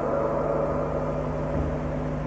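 Steady low electrical hum with background hiss from the microphone and sound-system recording, unchanging throughout.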